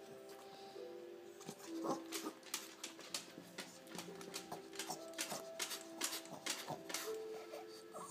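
Background music with sustained, held notes, over which a small dog's claws click and tap on a wooden floor as it hops, several sharp taps a second from about a second and a half in.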